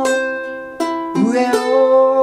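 A man singing the melody in long held notes while picking arpeggiated chords on a G-Labo Gazz-model ukulele; a new chord is plucked about a second in and the voice comes in on a new note just after.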